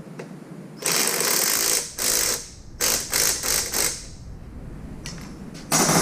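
Cordless impact wrench run against the rear wheel hub of a Ural motorcycle: a burst of about a second, a short one, then three or four quick bursts, as it works a fastener loose for wheel removal. A short loud clank comes near the end.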